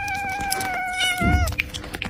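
A cat giving one long, drawn-out meow that holds a steady pitch and dips slightly as it ends about a second and a half in. A short low thump comes near the end of the call.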